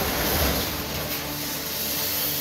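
Steady rumbling noise of a brick house collapsing, its rubble settling without any single distinct crash.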